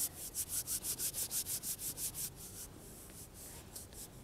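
Hands rubbing briskly together, a quick, even series of dry swishing strokes about six or seven a second that slows and thins out after about two and a half seconds.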